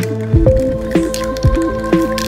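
Background music: an electronic track with held synth tones over a steady kick-drum beat.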